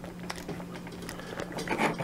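Faint handling sounds as a Really Right Stuff metal quick-detach strap swivel is worked into the plate on the bottom of a camera: light scrapes and small clicks of metal on metal, over a steady low hum.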